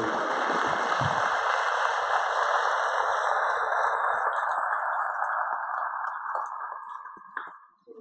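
Congregation applauding, a dense steady clapping that thins to a few scattered claps and dies away about seven and a half seconds in.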